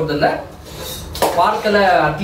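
A metal spoon stirring a thick mixture in a large pot, scraping and clinking against the pot's side.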